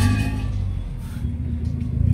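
A car engine running steadily nearby: a low, even drone with no revving.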